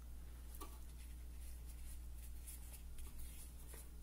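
Faint rustling and light scratchy ticks from an ankle boot being handled and turned over its cardboard shoebox, over a steady low hum.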